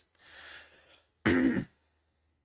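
A man clearing his throat once, a little over a second in.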